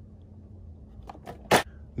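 Quiet room hum, then a short, sharp plastic rustle about a second and a half in as a blister-carded toy car is dropped into a plastic laundry basket.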